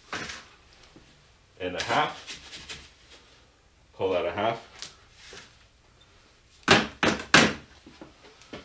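A long-handled shovel scooping sand out of a plastic bucket for a mortar mix. The blade scrapes with a brief squeal about two seconds in and again about four seconds in. Near the end come two or three sharp knocks of the shovel against a bucket.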